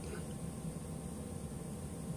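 Steady low background hum and hiss of the room, with no distinct sound event.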